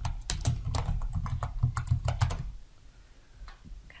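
Typing on a computer keyboard: a quick, steady run of keystrokes that stops about two and a half seconds in.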